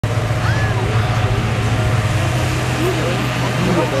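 Petrol-engine inflator fans running with a steady hum while hot-air balloon envelopes are cold-inflated, with crowd chatter over them.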